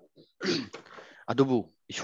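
Speech only: a person talking in short broken phrases with brief pauses.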